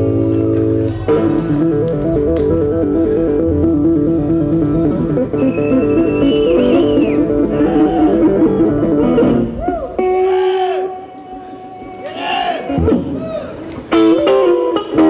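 Live blues band playing, with guitars and bass working a repeating riff. About ten seconds in it thins to a few sliding, bending notes before the band comes back in.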